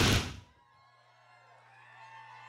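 A loud whoosh of noise from a broadcast transition sound, fading out about half a second in. It gives way to a faint steady electrical hum and faint room sound from the live event feed.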